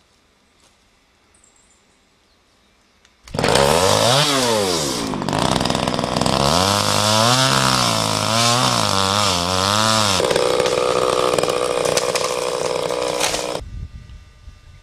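Two-stroke chainsaw cutting into a tree trunk: it comes in suddenly about three seconds in and revs, its engine speed rising and falling repeatedly as the chain bites into the wood, then runs steadily before stopping abruptly near the end.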